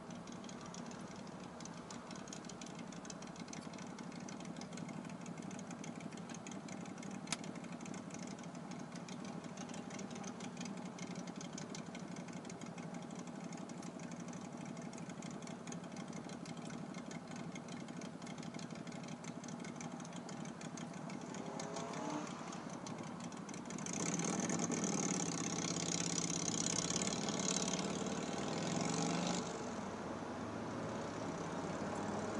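Car engine idling with low road noise, heard from inside the car while it waits at a red light, with a single sharp click about seven seconds in. About 22 seconds in an engine sound rises in pitch and grows louder, staying loud for about six seconds before dropping back.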